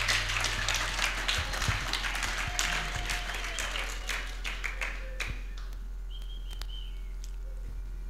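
Congregation applauding, the clapping dying away about five seconds in.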